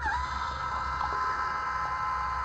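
Electric motorized dump valves on an RV's gray-water tanks running open after their buttons are pressed: a steady high whine that dips briefly in pitch as it starts.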